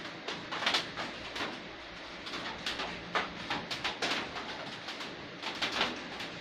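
Small irregular clicks, taps and rustles of hands handling small objects, a doll and makeup items, on a tabletop.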